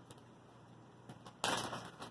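Small clear plastic bag handled with faint crinkles, then a sudden loud crackle of the plastic about one and a half seconds in, lasting about half a second, as the bag is opened.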